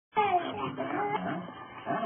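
A baby's whiny, pitched vocalizing, in a few wavering calls that glide downward in pitch.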